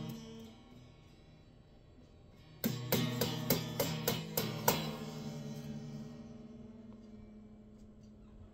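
Electric guitar: a chord fading out, a short pause, then about two seconds of quick strummed strokes, about four a second, ending on a final chord left to ring and fade away.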